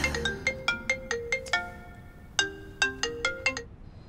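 Mobile phone ringtone: a short melody of light, plucked-sounding notes, played through twice with a brief gap between.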